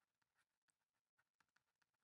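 Near silence: the recording is all but empty, with no audible sound.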